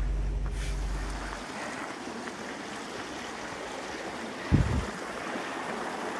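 Creek water running steadily. A low rumble stops about a second and a half in, and a brief low sound comes about four and a half seconds in.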